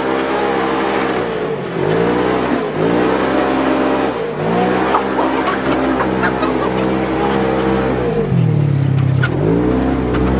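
Side-by-side UTV engine heard from inside the cab while driving on sand, the revs climbing and dropping every second or two. Near the end the revs fall lower, then climb again.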